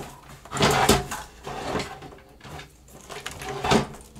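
Handling noise of a PC power supply and its cables being pushed into place inside a computer case: irregular scrapes and knocks, loudest about a second in and again near the end.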